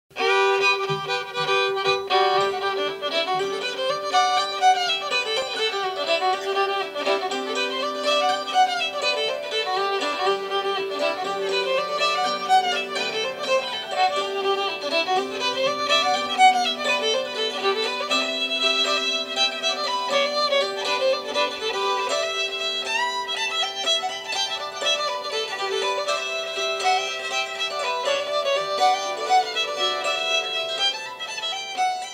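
A fiddle playing a lively tune, its melody moving over a steady held drone note.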